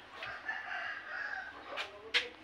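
A rooster crowing once, a call of about a second. A sharp click follows near the end.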